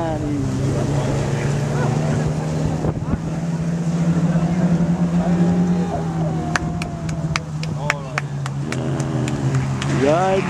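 Small stock-car engines running on a dirt oval during a race: a steady drone with revs rising and falling as the cars pass. A run of sharp clicks comes in the second half.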